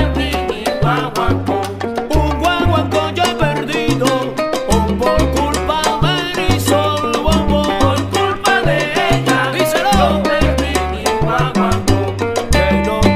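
Salsa dura recording playing: a repeating bass line of held low notes under steady percussion strokes, with melody lines above.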